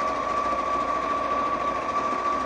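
Electric sewing machine stitching a seam through fabric at its top speed setting, running steadily without a break.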